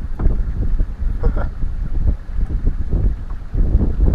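Wind buffeting an action camera's microphone: a gusty low rumble that rises and falls unevenly.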